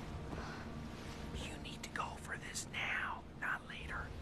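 A man whispering, a few breathy phrases that begin about a third of the way in.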